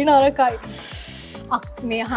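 A short hiss of under a second, starting about half a second in, over background music with a steady beat; a woman's voice is heard just before it.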